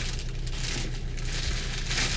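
Rustling and crinkling of packaging, handled while being pulled from the back seat of a car, over a steady low hum.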